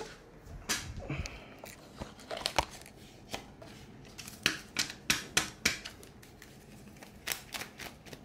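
Paper banknotes, a stack of twenty-dollar bills, being handled and counted out by hand: crisp, irregular snaps and rustles as bills are peeled off and the stack is fanned.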